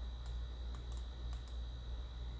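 About half a dozen faint, quick clicks from computer input, over a steady low electrical hum and a thin, steady high whine.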